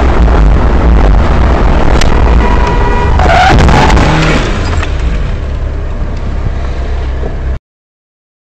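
Dashcam recording inside a moving car: a loud, steady low rumble of engine and road. A sharp click comes about two seconds in, then a loud noisy burst with short squeal-like tones between about three and four and a half seconds in, as another car comes right alongside. The sound cuts off suddenly near the end.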